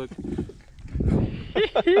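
A hooked fish splashing at the water's surface beside a boat as it is reeled in. A man starts laughing near the end.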